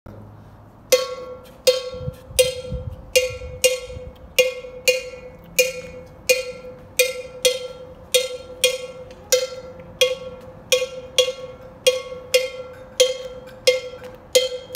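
A hand-held black metal cowbell-type bell struck with a wooden stick, playing a syncopated repeating rhythm. Every strike rings on the same pitch, and the playing starts about a second in.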